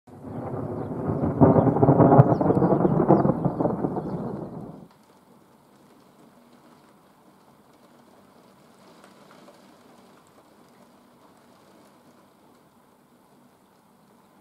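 A loud rolling rumble of thunder, strongest about two seconds in, that cuts off suddenly near five seconds. After that, faint steady rain with scattered small drop ticks.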